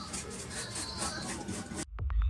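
Faint background noise with soft rustling and handling sounds, cutting off abruptly just before the end.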